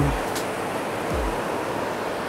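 Steady rush of wind and surf on an open beach, with a couple of brief low wind rumbles on the microphone.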